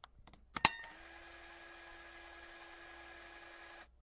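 A single sharp click a little over half a second in, after a few faint ticks, then a faint steady hum with a low tone running under it that cuts off suddenly near the end.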